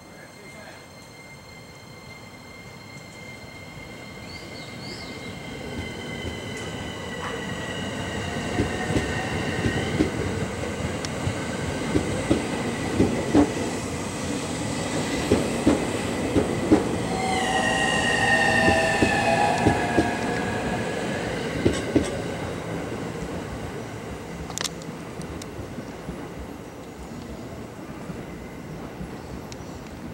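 JR East E231 series electric train pulling out and accelerating past: a whine from its drive in several tones that shift in pitch, with the wheels clicking over rail joints. It grows louder to a peak about two-thirds of the way through, then fades.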